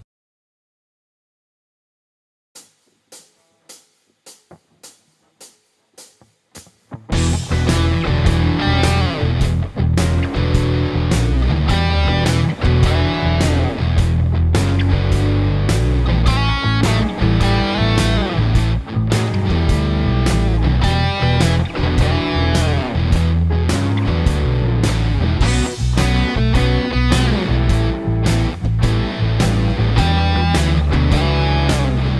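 Silence, then a row of faint clicks about two a second, after which an E blues backing track with drums and bass comes in about seven seconds in. An electric guitar plays blues lead phrases over it.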